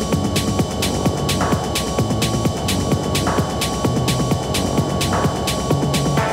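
Techno playing from a DJ mix: a steady driving beat with crisp hi-hats over a throbbing bassline, a held high tone, and a swelling sweep that comes round about every two seconds.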